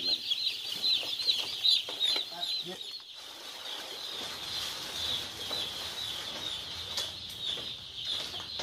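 A large flock of broiler chicks peeping continuously, many high, short chirps overlapping into a steady chorus.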